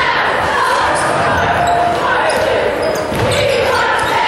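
Basketball dribbled on a hardwood gym floor, under the steady chatter and calls of a crowd in a large gymnasium.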